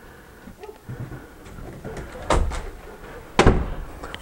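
Interior door being opened by hand, with two loud knocks a little over a second apart and some smaller clicks.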